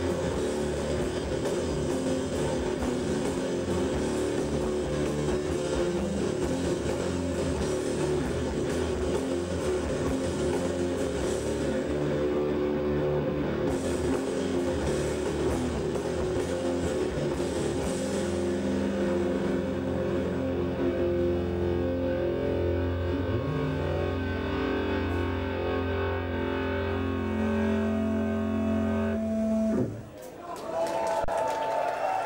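Stoner rock band playing live: heavily distorted electric guitars, bass and drum kit in a dense riff. About two-thirds of the way in the drums thin out and the band holds long sustained chords, which cut off abruptly near the end.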